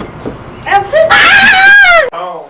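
A woman's loud, high-pitched shriek, starting under a second in and held for about a second, its pitch climbing and then dropping off at the end.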